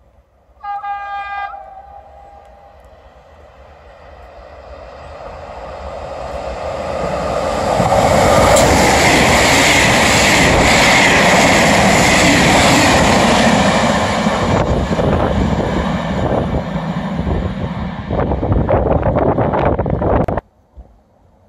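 An electric passenger train gives one short horn blast about a second in, then approaches and passes at speed. The rush of wheels on rails builds for several seconds, is loudest in the middle, and carries rapid clacking near the end.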